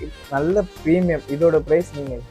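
Men talking, with background music underneath.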